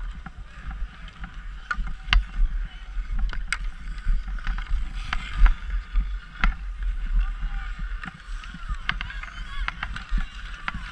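Ice skates scraping and gliding on outdoor rink ice, close to the microphone, with a scatter of sharp clacks from hockey sticks and puck on the ice. A steady low rumble runs underneath.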